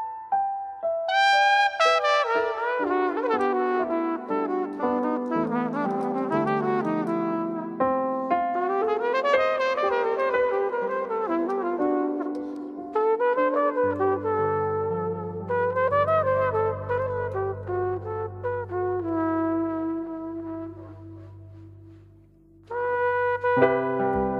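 Jazz trio playing a slow ballad: melodic runs over a bass line that steps down note by note, then a long held low note that fades away before the band comes back in loudly near the end.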